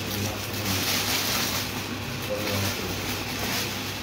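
A steady low hum under an even hiss, with faint rustling of plastic wrapping on bags being handled.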